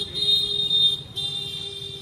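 A vehicle horn sounding two long, steady blasts of about a second each, with a short break between, over street traffic.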